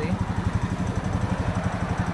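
Brand-new Honda Rancher 420 ATV's single-cylinder four-stroke engine idling happily with a steady, even, fast pulse; the engine is fresh from the crate, with under an hour of running since its first start.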